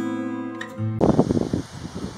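Acoustic guitar music that cuts off abruptly about halfway through. It gives way to outdoor wind noise on the microphone, gusty and uneven, with some rustling.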